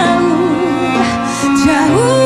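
A woman singing a slow ballad live, her held note wavering with vibrato, over sustained cello and keyboard accompaniment.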